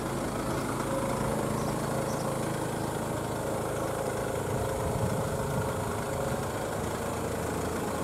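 A car engine idling steadily: an even, low hum with no change in speed.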